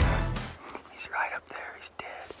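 Loud background music ending within the first half second, followed by a man whispering briefly about a second in, with a few faint clicks.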